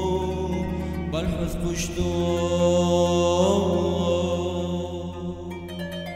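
Devotional music in a chant-like style: a steady low drone under a slow, gliding melodic line, with a short noisy swell between one and two seconds in. Plucked string notes begin near the end.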